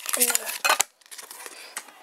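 Clear plastic magnetic card holder being handled, with small plastic clicks and one sharp clack about three-quarters of a second in.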